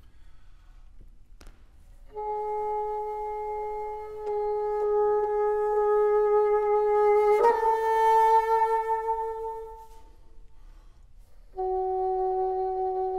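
Solo bassoon playing long held notes: a sustained note starts about two seconds in and grows louder, then a sharp, noisy accent moves it up to a slightly higher note that fades away. A new held note begins just before the end.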